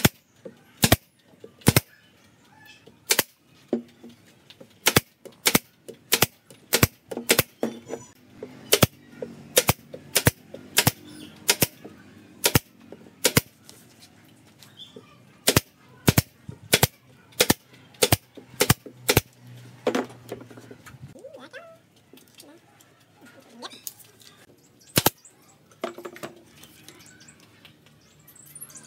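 A pneumatic nail gun firing nails into pine boards: a long run of sharp shots, irregular and often less than a second apart, thinning to a couple of shots near the end.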